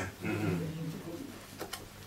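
A man's drawn-out "mm" hum, lasting about a second, followed by two faint clicks.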